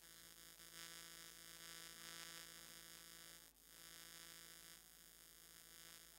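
Near silence with a steady electrical mains hum in the recording.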